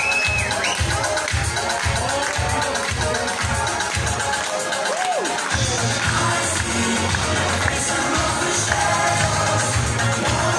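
Italo-disco dance track played loud, with a steady kick drum about twice a second, a man singing live into a handheld microphone over it, and a crowd cheering. Near the middle the beat drops out for about a second before the bass comes back in.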